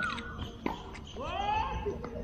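A tennis ball struck or bounced once, a single sharp knock, followed near the end by a drawn-out pitched call that rises and then falls.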